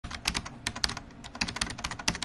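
Rapid, irregular clicking like typing on a computer keyboard, an added sound effect.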